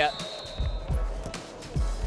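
A basketball bouncing on a hardwood court in a few dull thuds during live play, with music under the arena noise.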